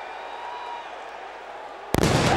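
Arena crowd noise, then near the end a sudden loud bang as the entrance pyrotechnics fire.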